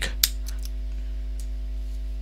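Several short, sharp computer mouse clicks in the first second and one more near the middle, over a steady low electrical hum on the recording.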